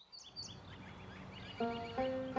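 Birds chirping over steady outdoor background noise, then plucked-string music comes in about three-quarters of the way through with held, ringing notes.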